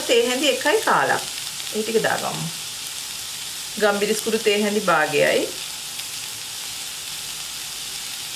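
Sliced onions and green chillies sizzling steadily in hot oil in a frying pan. A voice speaks in short phrases over the sizzle, near the start and again about four to five seconds in.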